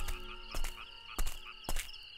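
Night ambience of frogs croaking: three short croaks spaced about half a second apart, over a steady high-pitched chirring.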